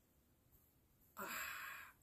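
Near silence, then about a second in a woman's short breathy, unpitched 'uh', like a sigh, lasting under a second.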